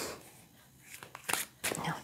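A deck of tarot cards handled in the hands, with a few short papery snaps and taps between about one and one and a half seconds in.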